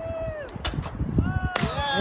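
A diver's body slapping into the sea from a high pier: a sharp smack of the water entry about half a second in, then a rush of splashing water, over gusty wind on the microphone. A person's drawn-out exclamations sound with it.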